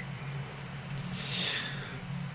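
Faint background of a live-call microphone: a steady low hum, with a soft breathy hiss about halfway through.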